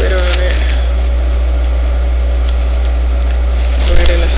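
A loud, steady low hum runs under a faint hiss, with a few faint clicks of hands handling something close to the microphone.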